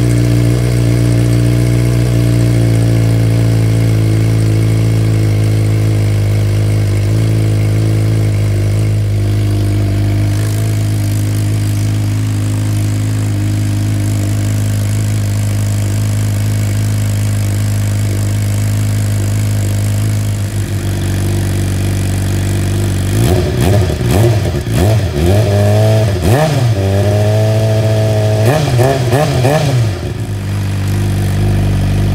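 A 2015 Suzuki GSX-R 600 inline-four, breathing through an M4 GP shorty exhaust with its baffle fitted, idling steadily. About two-thirds of the way through it is revved in a series of short throttle blips, the pitch rising and falling with each one.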